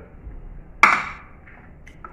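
A plate set down on a table: one sharp clink with a short ring, about a second in, followed by a faint click near the end.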